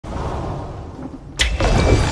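Fantasy-animation sound effects: a low rumbling drone, then, about one and a half seconds in, a sudden loud burst that carries on as a dense, noisy wash.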